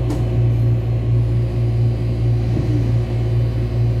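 Steady low electric hum and rumble of a Taiwan Railways electric multiple-unit commuter train, heard from inside the carriage.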